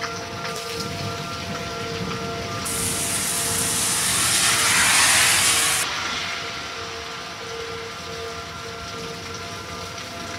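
Heavy thunderstorm rain hissing steadily. Under it, an outdoor tornado warning siren holds a steady tone that slowly swells and fades. About three seconds in, a gust of wind-driven rain rises to a loud rush, peaking around five seconds and dying back a second later.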